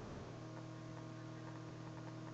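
Faint, steady electrical hum: a low buzz with a few higher steady tones over a light hiss.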